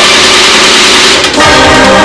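Electronic title theme music: a loud, dense held chord with a brassy, horn-like tone, dropping out briefly about a second and a quarter in before a new chord sounds.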